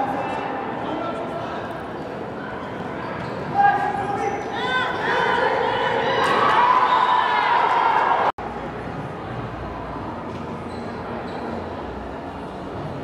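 Players and sideline spectators calling out and yelling during a flag football play in a large, echoing indoor turf hall, with a sudden loud sound about three and a half seconds in. The voices build to their loudest around six to eight seconds in, then cut off abruptly to quieter background chatter.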